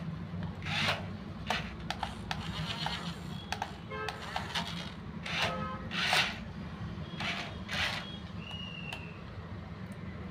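Small electric motors and plastic gearboxes of a toy RC loader and RC jeep running with a steady low hum, broken by several short grinding bursts as the loader's bucket strains against the jeep and cannot lift it, the jeep being too heavy for it.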